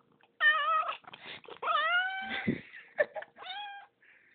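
Domestic cat meowing three times: the first call wavers, and the next two drop in pitch and then hold. There are short clicks and rustles between the calls.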